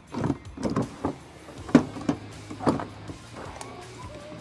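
Rear door locking handles and lock-bar cams of a refrigerated trailer being unlatched: a series of metallic clunks and rattles, about one every half second, the loudest a little before the middle, over soft background music.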